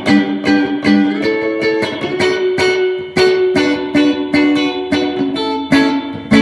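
Electric guitar played in picked notes and chords through a Boss RV-6 reverb pedal on its Spring setting, about two notes a second. Each note rings on into a spring-reverb tail.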